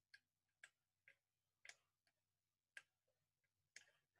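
Faint, irregular clicks, about six in all, from someone working a computer keyboard and mouse while searching through files.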